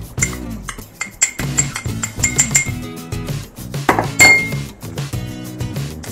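Metal spoon clinking against a small glass bowl as cocoa powder is scraped and tapped out into a steel pot. There is a quick run of light ringing clinks in the first couple of seconds, then one louder ringing clink about four seconds in, over background music.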